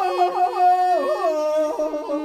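Mongolian long-song (urtyn duu) singing voice on a sustained, melismatic phrase, its pitch wavering in quick ornamental trills as it steps downward and settles on a held lower note near the end.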